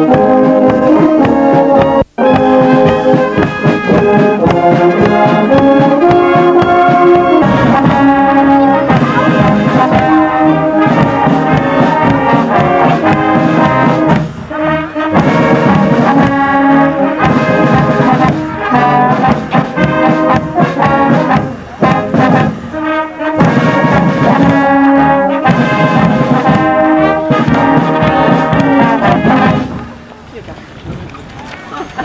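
A Bavarian-style village brass band plays a tune in the open air: tubas, horns and trumpets with clarinet over a steady bass-drum beat. The sound drops out for an instant about two seconds in, and the music stops at the close.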